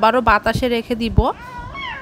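A woman speaking, then about a second and a half in a high, drawn-out call that rises and then holds, cut off abruptly at the end.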